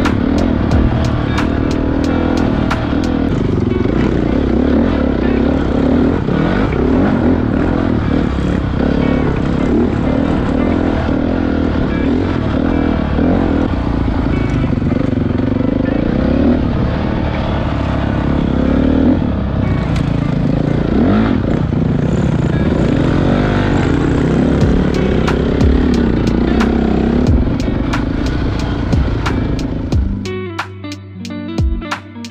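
Dirt bike engine running under way on a trail, its pitch rising and falling as the throttle is opened and closed.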